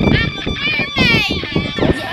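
A young woman's voice, high-pitched and wavering widely in pitch, with no clear words.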